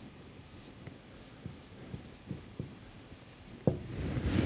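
Marker pen drawing on a whiteboard: faint scratchy strokes and light taps, with one sharper knock near the end.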